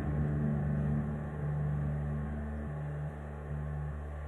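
A low, steady drone from the band's instruments lingers through an amplified sound system after the guitar strumming stops at the end of a song. The drone pulses slightly near the end.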